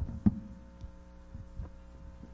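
Handling noise from a handheld microphone: a few dull thumps, the loudest about a quarter second in and another about a second and a half in, carried over the sound system. Underneath runs a steady electrical hum.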